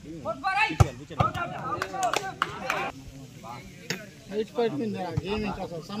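Volleyball being struck by hand during a rally: a series of sharp slaps a second or so apart, the loudest about a second in, with players and onlookers calling out around them.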